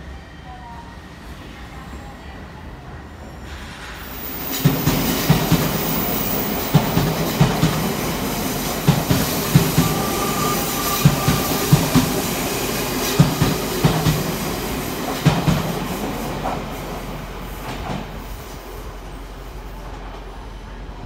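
Odakyu commuter train running past the platform on a tight curve. It comes in loud about four seconds in, its wheels knocking over the rail joints in a string of irregular thumps, and fades away over the last few seconds.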